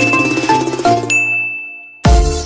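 Intro jingle of quick bell-like notes; about a second in the notes stop and a single high ding rings on, fading away.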